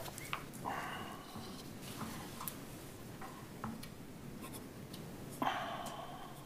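Papers rustling and a few small clicks and knocks in a quiet room, with two louder rustles about a second in and near the end.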